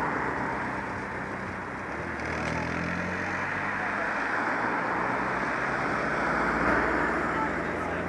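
Motorcycle engines running steadily, with the dense chatter of a crowd over them.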